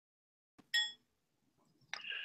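Two short electronic chimes: a bright ringing one under a second in, and a second one that starts with a click near the end.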